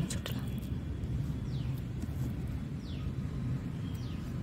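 Hand pushing loose potting soil over freshly planted tubers: a soft, low rustling of soil, with a few faint clicks at the start and two faint falling chirps in the middle.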